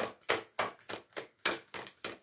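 A deck of oracle cards being shuffled by hand, a steady run of crisp card slaps at about three a second.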